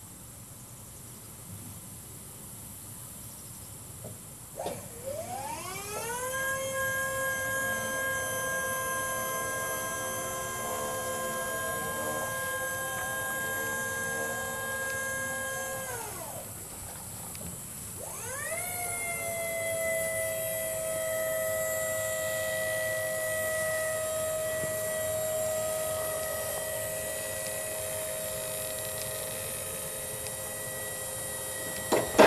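A Haulotte 5533A towable boom lift's 24-volt electric hydraulic pump motor whines as it raises the boom. About four seconds in it spins up with a quickly rising pitch and then runs at a steady pitch. It winds down at about sixteen seconds, spins up again about two seconds later, and runs steadily.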